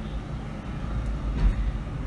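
Low, steady background rumble.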